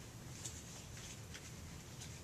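Quiet room tone with two faint, short soft clicks about a second apart.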